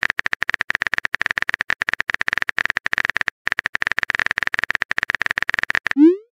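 Phone-keyboard typing sound effect: a rapid, steady run of light clicks, with a brief pause a little past halfway.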